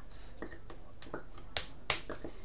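Scattered short clicks and taps as a sign-language user's hands strike each other and his body while signing, with two sharper slaps close together near the end.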